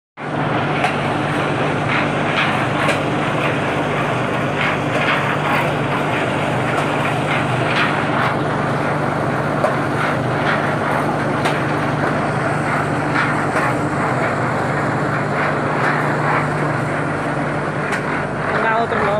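Cement-brick-making machinery running with a steady, loud hum, while cement bricks knock and clatter irregularly as they are handled.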